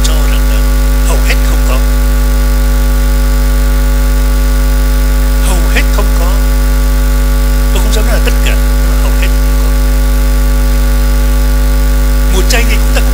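Loud, steady electrical mains hum with a buzz of many even overtones, unchanging throughout. Faint snatches of a distant voice come and go beneath it.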